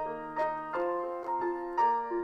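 Piano instrumental introduction to a hymn, with sustained chords and a new note struck about every half second.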